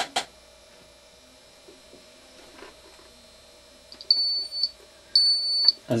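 Radio-control transmitter sounding its switch warning at power-up: a click, then high beeps about half a second long, one a second, starting about four seconds in. The beeps warn that a switch, the autopilot mode-select switch, has been left on.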